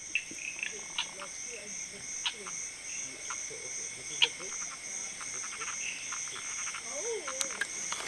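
Frogs and insects calling together: steady high-pitched insect trills with a pulsing buzz over them, and sharp click-like frog calls about once a second.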